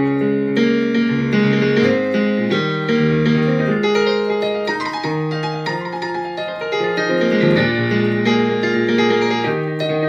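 Piano sound from a Nord Electro stage keyboard played solo, an instrumental passage of bass notes, chords and a melody line, with no singing.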